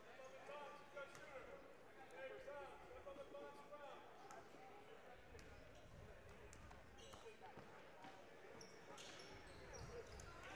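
A basketball bouncing on a gym floor during a free throw, under faint crowd chatter in a large hall. Near the end short high squeaks and quick clicks come in.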